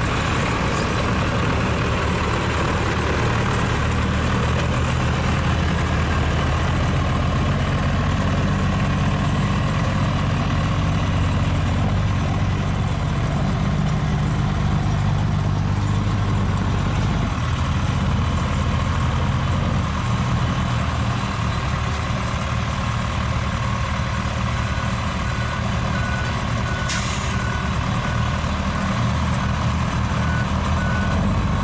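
Heavy diesel engine of a semi truck running steadily, strongest through the first half. Near the end a reversing alarm starts beeping at an even pace, with one brief hiss among the beeps.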